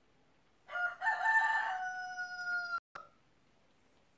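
A rooster crowing once: a short first note, then a long held call of about two seconds that falls slightly in pitch and cuts off abruptly, followed by a brief click.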